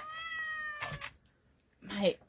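A kitten meowing from inside a pet carrier: one long drawn-out cry, falling slightly in pitch, that stops about a second in. A short crinkle of the MRE pouch being torn open follows near the end.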